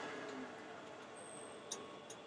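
Wood lathe coasting to a stop, its faint running noise dying away over the first half second, with a light tick near the end.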